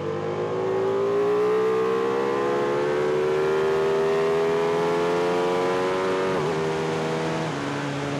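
Ducati 1299 Panigale S's Superquadro V-twin heard from an onboard camera under hard acceleration on track, revs climbing steadily through a gear. About six seconds in the revs dip sharply, then hold lower and steadier.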